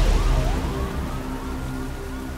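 A police siren winding up, its pitch rising over about a second and then holding a high steady tone, over a low rumbling music drone that slowly fades.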